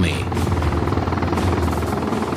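Bell UH-1 "Huey" helicopter flying away, its rotor and turbine running steadily with a rapid, even rotor beat.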